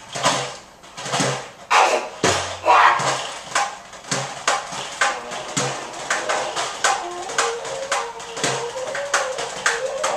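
Improvised percussion: a run of sharp strikes, each ringing briefly, irregular at first and then about three a second. A held tone joins in over the last few seconds.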